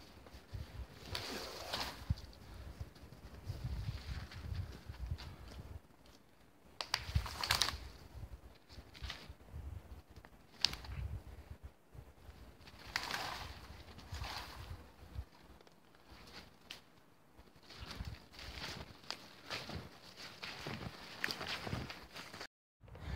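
Dead branches being broken loose by hand and dragged through brush and snow: scattered bouts of cracking and rustling with low thumps and steps in snow, faint and at some distance, with one sharper crack about eleven seconds in.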